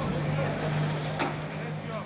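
A city bus passing close by: a steady low engine hum over general street and market noise, with indistinct voices underneath.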